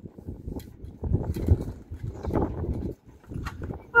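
Footsteps and knocks on a sailboat's deck, coming irregularly with short pauses.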